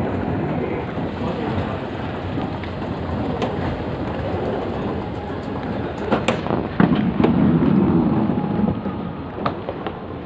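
Steady mechanical rumble of a moving escalator, with a few sharp knocks about six seconds in and a louder rough stretch just after, around the step off the escalator.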